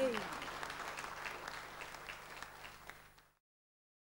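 Studio audience applause, a dense patter of clapping that fades steadily and is cut off about three seconds in. At the very start a held tone slides down in pitch and dies away.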